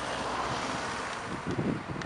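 Wind rushing over the microphone, with irregular low buffeting gusts near the end.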